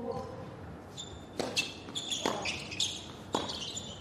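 Tennis rally on a hard court: about three sharp racket strikes on the ball, roughly a second apart, with short high-pitched squeaks in between.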